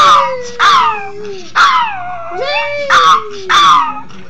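Yorkshire terrier howling and yipping in excitement: about five sharp, high cries, each falling in pitch, over a long, lower whining tone that slides downward.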